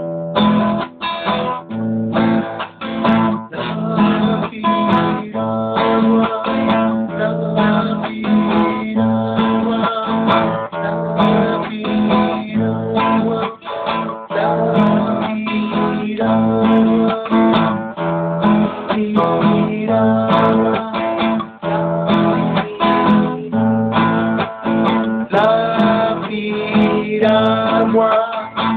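Acoustic guitar strummed in a steady rhythm, chords over low bass notes that alternate between two pitches.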